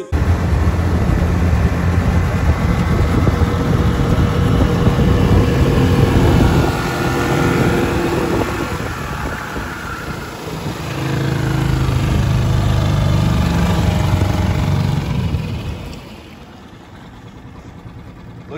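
Small Mercury tiller outboard motor running under way, pushing an aluminium jon boat across open water along with the rush of water and wind. The engine eases off briefly around the middle, picks up again, then throttles down a couple of seconds before the end.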